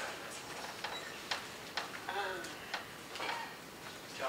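About seven sharp clicks at irregular intervals, with a short vocal sound about two seconds in.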